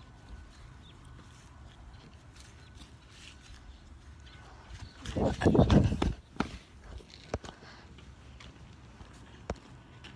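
Footsteps of someone walking down a grassy slope onto a concrete driveway, with camera-phone handling noise. There is a louder stretch of scuffing and thumps about five seconds in, then a few single clicks.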